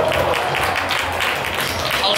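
Stadium crowd applauding and cheering: a steady mass of clapping with voices mixed in.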